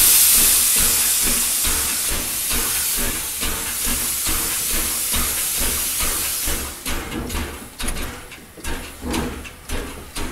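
Steam locomotive letting off a loud, steady hiss of steam over a low rumble. After about six and a half seconds the hiss fades into a rhythm of chuffs, about two a second.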